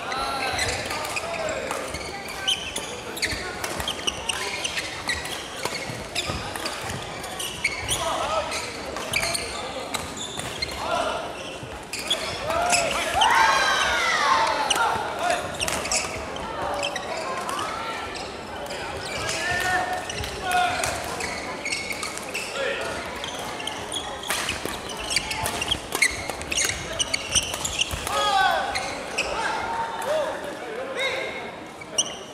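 Badminton doubles play in a large sports hall: sharp racket hits on the shuttlecock and sneakers squeaking on the wooden floor, loudest and most frequent about halfway through, over echoing background voices.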